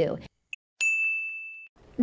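A single bright bell-like ding, struck once near the middle and ringing for about a second as it fades away, with a tiny blip just before it.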